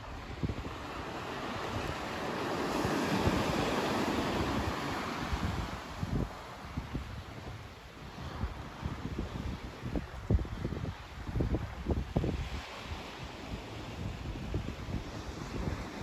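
Small sea waves washing onto a beach, swelling to their loudest a few seconds in. Wind buffets the microphone in short low rumbles through the second half.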